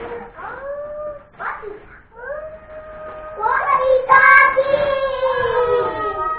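A child's high voice in short sing-song phrases, then one long held note from about halfway through that slides down at the end.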